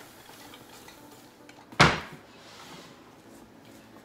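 One loud clunk of cookware being handled, about two seconds in, with a short ring after it; otherwise only faint clatter of pans and utensils.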